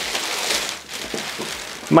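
Thin clear plastic shipping bag crinkling and rustling as a backpack is pulled out of it, loudest about half a second in.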